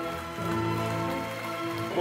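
Orchestral music holding sustained chords, with audience applause underneath.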